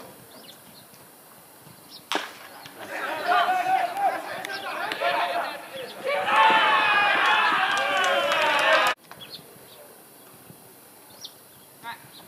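A single sharp crack of the baseball about two seconds in, then ballplayers shouting and calling out across the diamond. The shouting is loudest from about six seconds in and cuts off abruptly near nine seconds.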